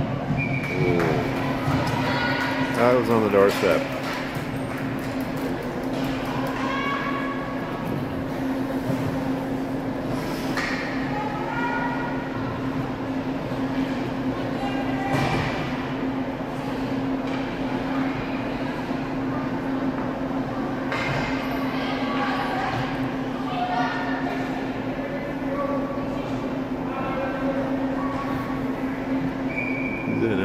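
Hockey-rink ambience: indistinct spectator voices over a steady low hum, with a few sharp knocks.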